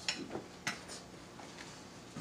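A few light clinks of a fork against a plate as food is cut, the sharpest near the start and a little over half a second in, with softer taps after.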